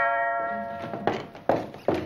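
A doorbell chime of several steady tones ringing out and fading in the first half second, followed by three short thuds spaced under half a second apart.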